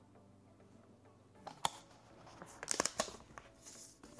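Handling of a laptop and its packaging: a sharp click about one and a half seconds in, then a quick run of clicks and paper rustling as the paper-wrapped MacBook Pro is lifted out of its cardboard box. Faint background music runs underneath.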